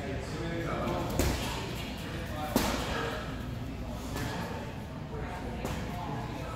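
Two sharp thumps about a second and a half apart, the second louder, from grapplers' bodies hitting the foam mats. They sound over indistinct voices in a large, echoing hall.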